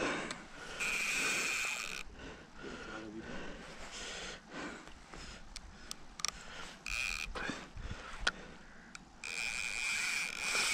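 Fixed-spool fishing reel's drag buzzing as a hooked pike pulls line off: a spell of about a second shortly after the start, a short burst about seven seconds in, and another run starting near the end.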